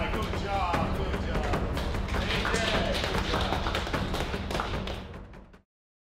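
Indistinct voices calling out over background music with a steady bass, with scattered taps and thuds, all fading out to silence near the end.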